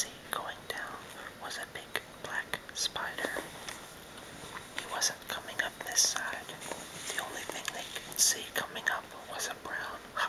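A man whispering, reading a children's story aloud, with crisp hissing s-sounds standing out.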